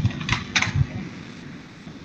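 Computer keyboard keystrokes: a few short clicks in the first second as a MATLAB command is typed and entered.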